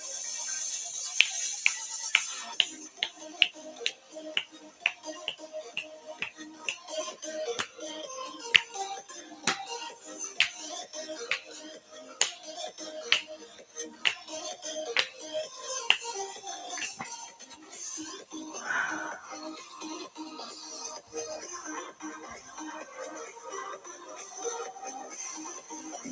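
Background music with a steady snapping beat, about one snap a second, the snaps thinning out about two thirds of the way through.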